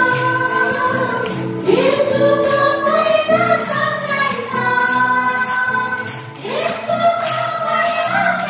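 Women's voices singing a Nepali Christian worship song together, with a tambourine struck in a steady beat.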